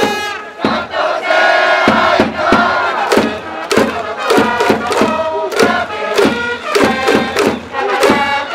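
Japanese pro baseball cheering section: a crowd chanting and shouting in unison. It opens with a long held shout, then from about three seconds in a rhythmic chant over a steady drumbeat.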